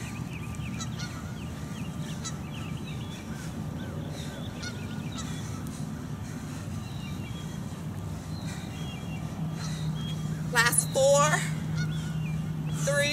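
Birds calling, with short high chirps through the first half and a louder wavering call about ten and a half seconds in, over a steady low hum.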